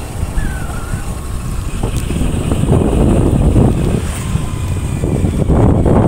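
Wind buffeting the microphone over the low running of a motorcycle or scooter on the move, growing a little louder about halfway through.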